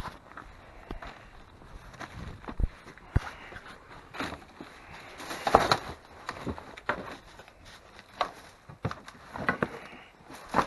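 Footsteps over loose debris of broken boards, brick and trash, with irregular knocks and scrapes as the boards shift underfoot. The loudest is about halfway through.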